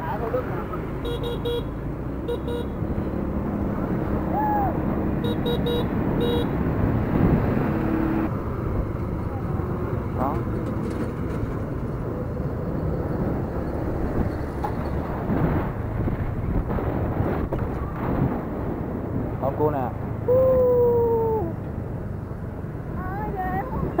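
Motor scooter riding in highway traffic, with steady engine and road rumble. Several runs of short electronic beeps come in the first seven seconds, and a vehicle horn sounds for about a second near the end.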